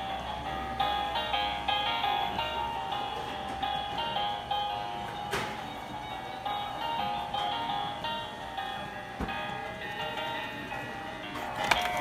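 Animated plush Snoopy toy playing a simple electronic melody of steady notes through its built-in speaker. Near the end a clatter as the toy falls over.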